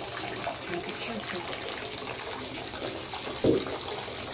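Steady noise of water in a filled bathtub, with one dull thump about three and a half seconds in.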